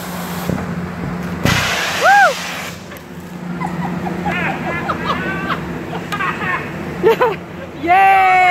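Compressed air and water bursting out of a pipe opening in a concrete floor in a loud hissing rush lasting about a second, starting about a second and a half in, as air pressure drives a poly sphere pig through the line to dewater it. A brief shriek comes with the blast, followed by laughter.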